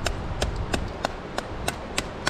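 Small folding pocket axe chopping into a thin sapling trunk: about seven quick, sharp strikes, roughly three a second.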